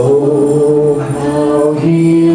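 Live worship song: voices singing a long held note over acoustic guitar, moving to a lower note near the end.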